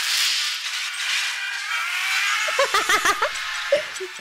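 Movie soundtrack: a van crashing down onto a road, a loud hit at the start followed by a rushing wash of vehicle noise. Music with wavering pitched notes comes in during the second half.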